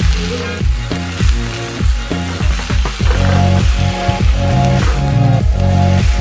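Background music with a steady beat, about two beats a second, over a pitched bass and synth line.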